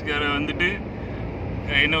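A man talking over the steady low rumble of a car driving along, heard from inside the cabin; the road and engine noise is left on its own for about a second in the middle.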